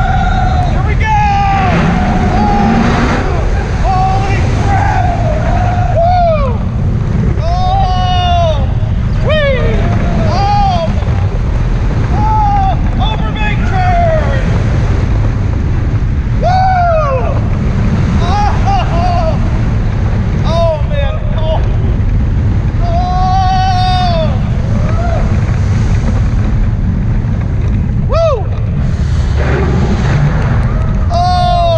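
Steel launched roller coaster train running at speed, with a steady loud roar of wind and track rumble. Over it come repeated rising-and-falling whoops and screams from riders every second or two.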